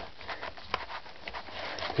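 Hands working at a cardboard cartridge box inside a leather holster pouch: soft rustling and scraping, with a sharp click about three-quarters of a second in.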